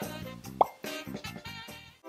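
Soft background music with a short, rising pop sound effect about half a second in.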